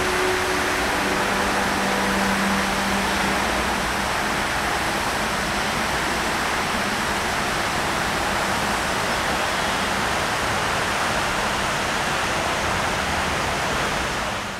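Large river fountain jets spraying and falling back onto the water, a steady rushing hiss. A faint low hum sits under it for the first few seconds.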